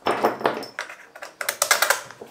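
Hand tools working the CV joint on a driveshaft: a scraping rattle at the start, then a fast run of sharp clicks in the second half.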